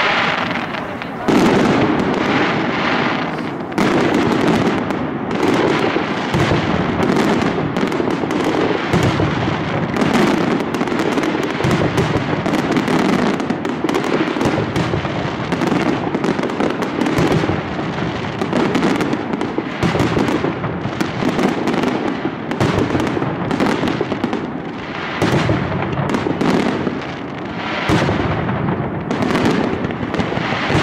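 Aerial mascletà: a dense, continuous barrage of firecracker bangs bursting in the sky, the sharp reports running into one another without a break. Stronger volleys come about a second in, around four seconds in and near the end.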